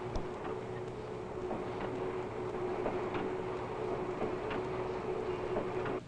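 Factory assembly machine running with a steady hum and a few light clicks.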